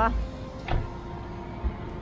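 Street background hum with a short sharp click about two-thirds of a second in and a brief dull thump near the end.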